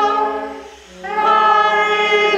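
Voices singing a hymn in held notes. The sound drops away between phrases just after half a second in, and a new phrase begins about a second in.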